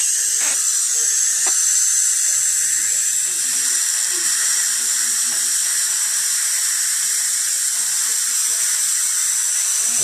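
Dental saliva ejector running continuously in a patient's mouth: a steady high hiss of suction.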